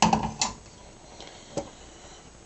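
Short clatter of kitchenware being handled: a sharp clack at the start, another about half a second in, and a lighter tap about a second and a half in.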